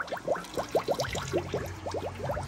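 Used oil pouring from a drain plug under a 1957 Land Rover Series 1 into a waste-oil drain tank during an oil change. It lands as a quick, irregular run of splashing drops and gurgles.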